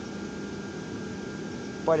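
Steady whir of the electric blower fans that keep lawn inflatables inflated, with a faint constant hum.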